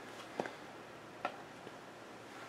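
Quiet room tone with two faint, short clicks, about half a second and a second and a quarter in.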